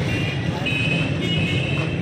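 Busy street traffic: a steady low hum of engines, with a high-pitched tone sounding in short broken stretches over it.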